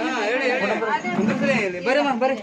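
Several people talking at once: overlapping voices in conversation.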